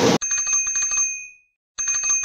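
Notification-bell sound effect: a quick run of small bell strokes over a high, steady ring, lasting about a second. It starts again near the end.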